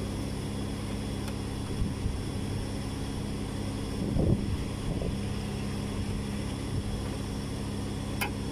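Steady low mechanical hum with a few constant tones, the drone of running machinery, with a couple of faint brief handling sounds about halfway through.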